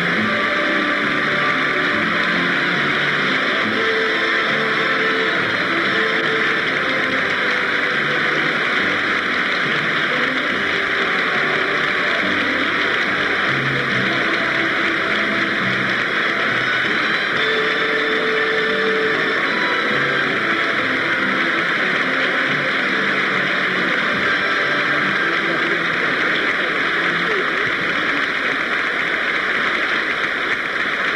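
Sustained audience applause, a steady dense clapping that holds its level throughout, over walk-on music from the band.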